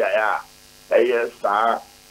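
A man's voice over a telephone line, repeating short syllables, with a low hum on the line.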